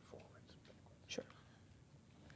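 Near silence in a room, with a faint voice murmuring a couple of short words, once just after the start and once about a second in.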